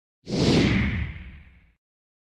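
Whoosh sound effect for an animated logo intro, starting sharply a quarter second in with a deep rumble under a hiss that falls in pitch, then fading out over about a second and a half.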